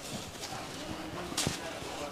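Silk saree fabric rustling and swishing as it is spread and smoothed out by hand, with a few light taps and one sharper swish about one and a half seconds in.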